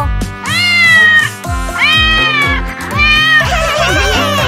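Three drawn-out cartoon cat meows, each falling slightly in pitch at the end, over children's music with a steady bass beat.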